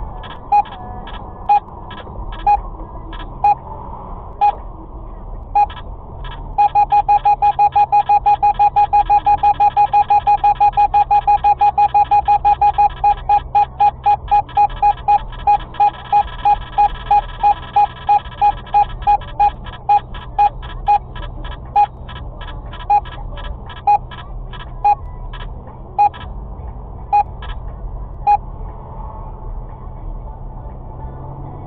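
In-car radar detector beeping a warning of a speed radar ahead. Single beeps come about a second apart, quicken into a rapid run of beeps about six seconds in, then space out again to about one a second. Steady car-cabin road noise runs underneath.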